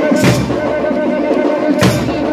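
Samba-school parade music: a held, wavering tone over percussion, with a sharp hit just after the start and another near the end.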